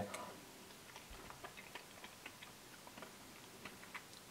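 Faint, irregular little mouth clicks and smacks from quietly tasting a bite of Oreo cookie ice cream.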